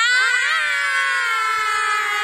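Children shouting together in one long, held cheer, several voices rising at first and then holding a steady high note.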